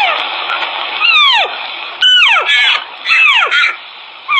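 Deer calling: a series of sharply falling calls, about one a second, each lasting around half a second, over a hissy background.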